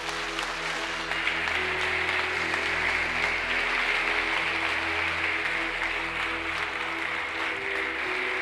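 Audience applauding steadily in a hall, growing a little louder in the middle. A steady background music tone runs underneath.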